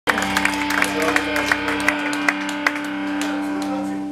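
Live rock band on stage: a held guitar chord ringing through the amplifiers, with sharp hits and crowd clapping and cheering over it. A low rumble drops out a little before halfway.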